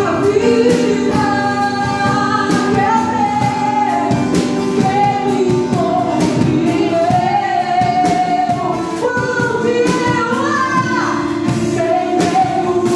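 Live worship song in Portuguese: a woman sings into a microphone, holding long notes, backed by a drum kit played with sticks and an acoustic guitar.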